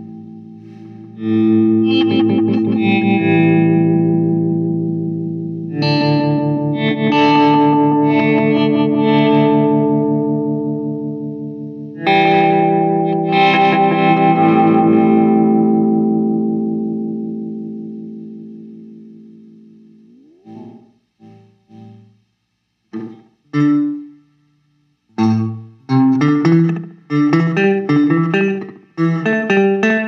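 Electric guitar played through the Hologram Electronics Infinite Jets Resynthesizer pedal, with distortion. Three long, held chords come in one after another, and the last fades out slowly. Then, in the final third, there are short chopped stabs that come quicker and quicker.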